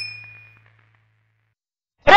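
Tail of an animated intro's logo sound effect: a bright ringing ding fading away within about half a second, over a low hum that dies out by about a second and a half.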